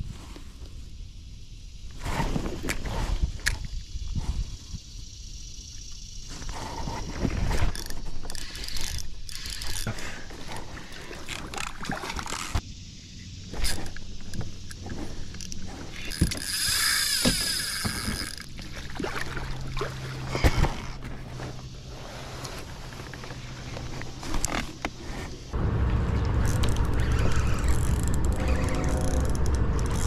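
Spinning fishing reel and rod being handled on a kayak: a run of clicks and knocks from the reel, with a harsher rasp for a couple of seconds past the middle. A steadier low rumble takes over in the last few seconds.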